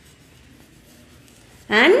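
Chalk writing faintly on a chalkboard, followed near the end by a woman's voice saying "and".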